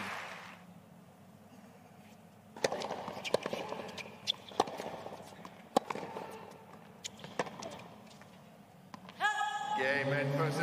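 Tennis rally on a hard court: a string of sharp pops as the racket strikes the ball and the ball bounces, irregularly spaced over several seconds, over a faint crowd hush. A voice rises near the end.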